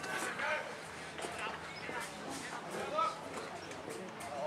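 Indistinct voices calling out in short bursts, too distant or muffled for words to come through.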